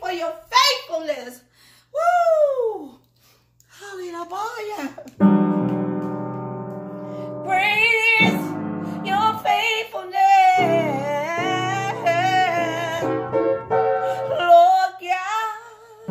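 A woman's voice calls out in sliding, drawn-out cries. About five seconds in, piano chords start and are held, and she sings over them with a wavering, melismatic line.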